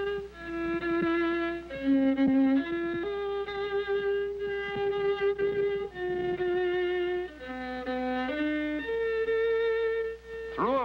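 Solo violin playing a slow melody of long held notes with vibrato, stepping up and down in pitch, over a faint steady low hum.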